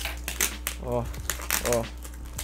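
Clear packing tape and plastic wrap on a cardboard parcel crinkling and crackling as it is cut with scissors and pulled by hand, with a series of short sharp snaps.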